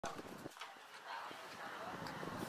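Faint footsteps of rubber flip-flops slapping on a concrete floor, a few separate steps, with muffled voices in the background.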